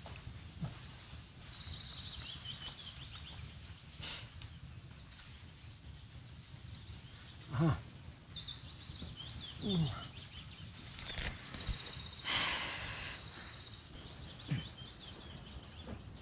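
Small birds chirping in quick repeated trills, in two spells, with a person sighing a few times.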